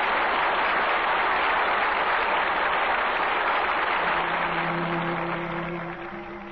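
A large audience applauding steadily on an old radio broadcast recording. The applause fades in the last couple of seconds as held orchestral notes come in, about four seconds in.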